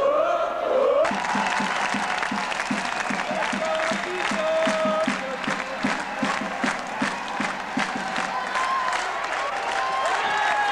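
Arena crowd singing and chanting to steady rhythmic clapping, celebrating as the title trophy is raised.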